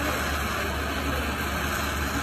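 Gas jewelry torch flame hissing steadily as it holds a bead of molten 22k gold on a charcoal block, with a constant low hum underneath.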